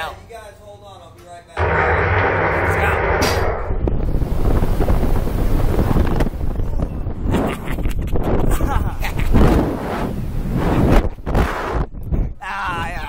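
Slingshot reverse-bungee ride capsule launched: a sudden loud burst about a second and a half in, then wind rushing hard over the on-ride camera microphone as the capsule flies and swings, with the riders' laughter.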